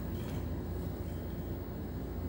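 Steady low background rumble, with faint soft scraping of a metal ice cream scoop working through sticky oat cookie dough in a glass bowl near the start.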